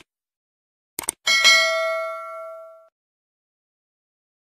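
Subscribe-button sound effect: two quick clicks about a second in, then a single bell ding that rings with several clear tones and fades away over about a second and a half.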